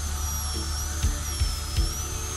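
Air-driven high-speed dental handpiece with a diamond bur giving a steady high-pitched whine as it cuts a molar crown preparation. The whine dips slightly in pitch in the second half, then climbs back.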